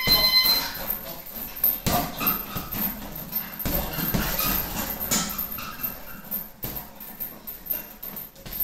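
Boxing gloves striking a hanging uppercut bag in an irregular run of punches, each a sharp slap-thud, with a few harder blows among lighter ones. A short electronic beep sounds right at the start.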